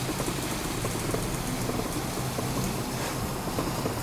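Garaventa outdoor vertical platform lift running as it descends: a steady low hum from its drive.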